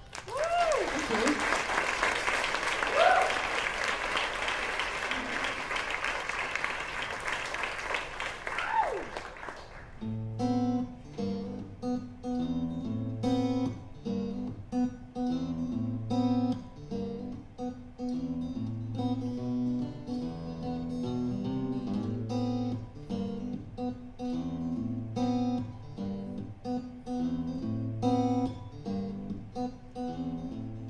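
A live audience applauding and cheering, with a few rising and falling whoops, for about the first ten seconds. Then a solo acoustic guitar starts a song's intro, picking single notes over a repeating bass pattern.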